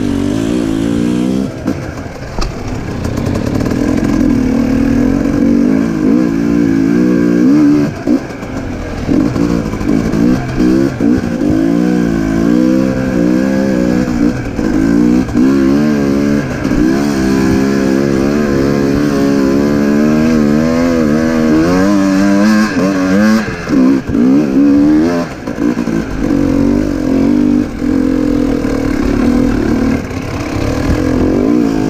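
Dirt bike engine running under constantly changing throttle, its note rising and falling every second or so, with a few brief drops where the throttle is shut off.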